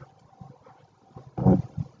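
A short, loud non-speech vocal sound from a person close to the microphone about one and a half seconds in, followed by a smaller one, over faint room noise.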